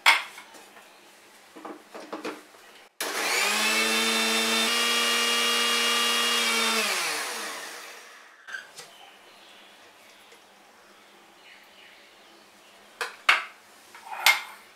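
Mixer grinder motor starts suddenly about three seconds in and runs for about four seconds, blending cooked tomato mixture and water in its steel jar. It is then switched off and winds down with a falling pitch. A sharp clink comes before it starts, and a few knocks near the end come from handling the jar.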